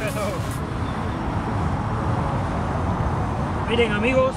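Steady, gusty wind noise on an outdoor microphone, mostly low and rumbly. Background music stops about half a second in, and a brief voice comes near the end.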